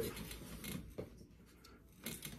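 Faint rustling of a person moving beside a cardboard box, with a single soft click about a second in, then room tone.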